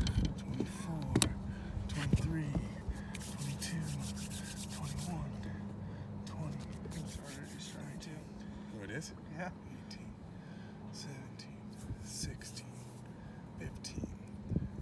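Quiet, low talking over a steady low hum, with scattered light clicks.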